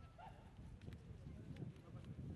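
Faint outdoor ambience: a low rumble with faint distant voices and a few faint clicks.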